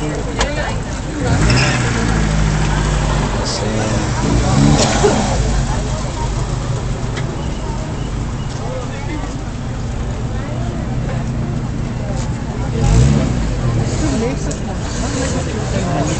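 Old car engines running at idle close by, a steady low rumble that swells briefly about a second and a half in and again near the end.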